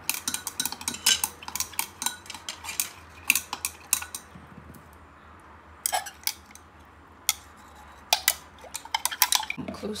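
A thin stirrer clinking rapidly against the inside of a small glass beaker, stirring licorice and bearberry powder into warm distilled water to dissolve them. The clinking stops for about two seconds near the middle, comes back as a couple of single taps, then turns rapid again near the end.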